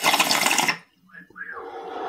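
Ceramic bong drawn on with the bowl slide pulled, giving a short loud rush of air and bubbling water that stops less than a second in. A softer breathy exhale follows.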